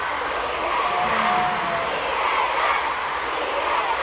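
Arena crowd cheering and screaming steadily, with one voice held briefly above the roar about a second in.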